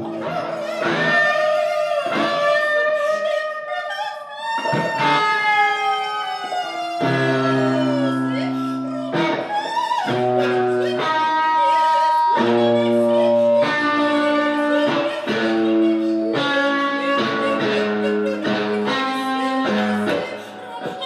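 Free improvisation for wordless voice and electric guitar: a woman's improvised vocalising over sustained electric guitar notes and chords, with one long, slowly falling glide about five seconds in.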